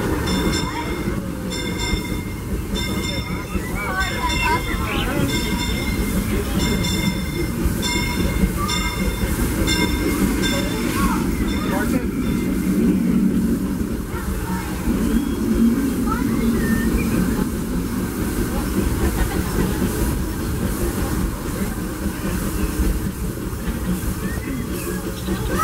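Disneyland Railroad train behind steam locomotive Fred Gurley #3 running along the track, heard from aboard: a steady low rumble with a regular clicking of wheels over the rails and a faint ringing from the wheels through the first half.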